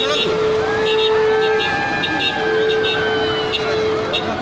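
Background voices of people talking, over a steady hum that breaks off briefly in the middle.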